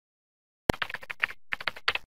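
Keyboard typing sound effect: two quick runs of sharp key clicks, the first starting about two-thirds of a second in, with a brief gap near a second and a half.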